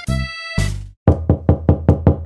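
A brief music sting, then rapid knocking on a door, about five knocks a second, as the pizza delivery arrives.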